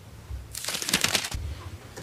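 A person sipping tea from a glass mug: a crackly, slurping sip lasting just over a second, starting about half a second in.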